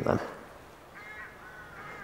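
Faint distant bird calls: a few short, thin cries beginning about a second in.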